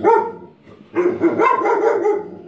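Dog barking indoors: one short bark at the start, then a quick run of barks about a second in.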